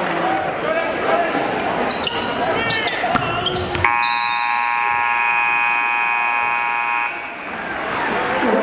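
Gym scoreboard buzzer sounding one steady, even blare for about three seconds, starting about four seconds in: the horn marking the end of the half, with the clock at 0.0. Crowd noise from the stands runs underneath and before it.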